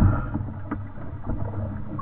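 Muffled underwater sound of a scuba dive heard through a camera housing: a steady low rumble of water and bubbles with a few faint clicks, swelling briefly at the start and cutting off suddenly at the end.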